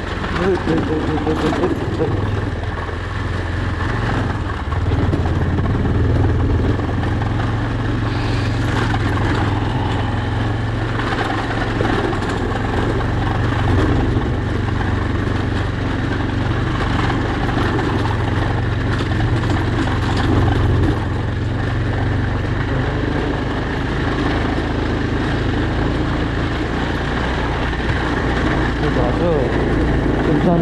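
Motorcycle engine running steadily at low speed while the bike rides a rough dirt track.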